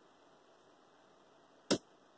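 One sharp click about one and a half seconds in, from handling and switching the battery door alarm; no alarm tone sounds.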